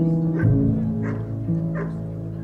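Background music with long held notes, over which a dog gives three short barks.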